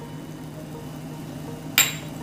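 Low steady background hum, with one short sharp noise near the end.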